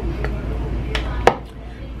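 A plastic scoop knocking against a plastic shaker bottle as protein powder is tipped in: a few light taps, with one sharper knock a little past a second in.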